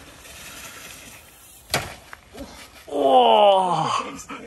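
A sharp click a little before two seconds in, then a person's long groan, falling steadily in pitch, about three seconds in.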